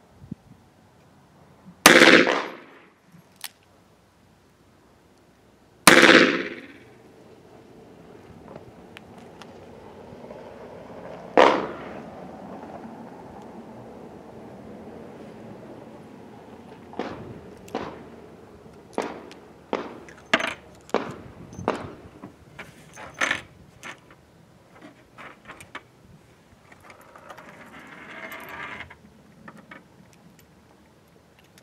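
Two shots from a four-inch Ruger .357 Magnum revolver firing 125-grain .38 Special rounds, about four seconds apart, each with a short echo. A single sharper knock follows about halfway through, then a run of light metallic clicks and clatters as the revolver and cartridges are handled on the table.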